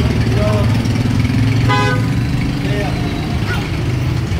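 Street noise with a steady low engine hum, and one short vehicle-horn toot a little under two seconds in.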